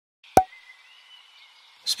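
A single sharp pop about a third of a second in, followed by a faint high hiss with thin steady tones, and a short swell right at the end as music begins.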